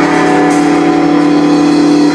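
Rock band playing live, electric guitars holding one steady sustained chord that drones through without a break, among them a Rickenbacker semi-hollow electric guitar.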